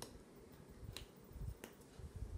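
Quiet room tone broken by three faint, sharp clicks spaced about a second apart.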